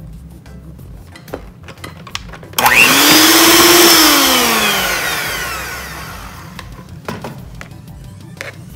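Electric hand mixer with twin beaters switched on suddenly about two and a half seconds in, its motor whine rising quickly and holding steady while it beats flour into butter and brown sugar, then dropping in pitch and fading as it winds down. Before it starts, a few light clicks and taps of flour going into the plastic bowl.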